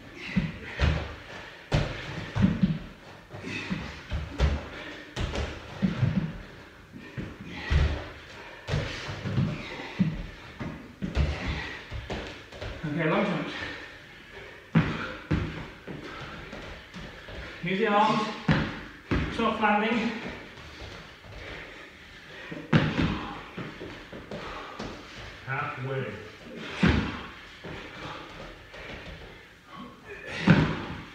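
Repeated irregular thuds of feet landing on exercise floor mats during jumping drills, with a few short bursts of a man's voice straining through the effort.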